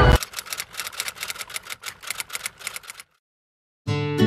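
Typewriter-style key clicks used as a sound effect over on-screen text: a quick, irregular run of clicks that stops about three seconds in. After a brief silence, strummed acoustic guitar music starts just before the end.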